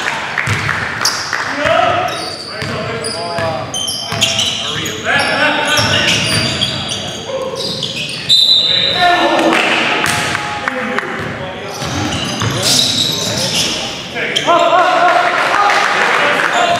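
Basketball game sounds in a reverberant gym: sneakers squeaking sharply on the hardwood court, the ball bouncing, and players calling and shouting to each other.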